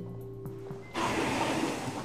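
Background score holding a low sustained chord. About a second in, a rushing whoosh of noise comes in and lasts about a second.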